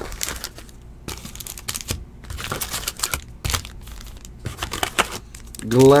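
Foil wrappers of basketball trading-card packs crinkling and rustling as they are handled, with scattered small clicks and taps.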